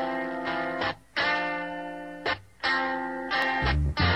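Rock music: slow electric guitar chords with an effects-laden tone, each ringing for about a second with short breaks between them. A low bass note comes in near the end.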